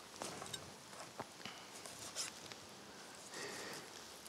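Knife cutting through wild boar meat along the backbone: faint, scattered small clicks and soft scraping.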